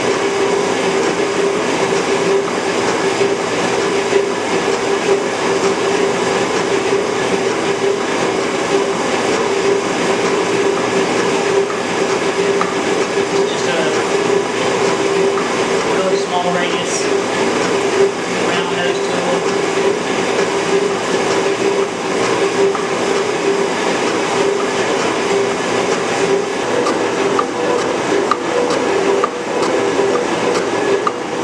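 Metal shaper taking a cut, running steadily with a constant machine hum under the noise of the stroking ram and tool.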